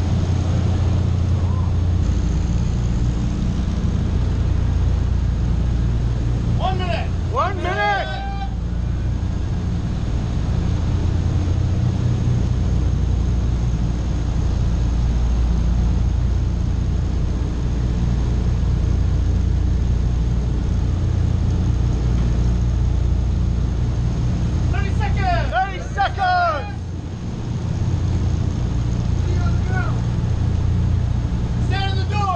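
Steady, loud drone of a Douglas C-47's twin radial piston engines in flight, heard inside the cabin with the jump door open so the slipstream rushes through. A short shouted call comes about seven seconds in and another about twenty-five seconds in.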